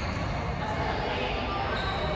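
Badminton rackets striking a shuttlecock during a rally: a couple of sharp clicks, the clearer one near the end, over the steady hubbub of a large sports hall.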